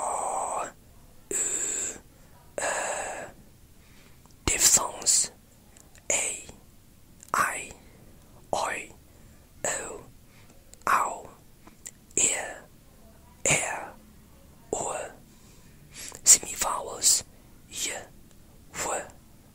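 A person whispering a string of short, separate English speech sounds and words, one about every second. These are whispered RP phonemes and example words read off a phoneme chart.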